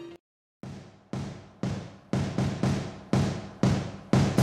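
Background music: one song stops abruptly, and after half a second of silence a new track starts with a drum beat, strikes about twice a second with an occasional extra hit between them.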